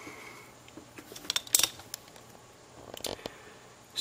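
A few faint clicks in two small clusters, one between one and two seconds in and another about three seconds in, over quiet room noise.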